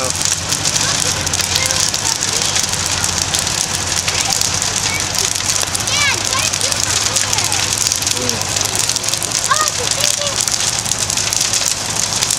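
A wooden outhouse burning in full blaze: the fire's dense, steady crackling of burning timber.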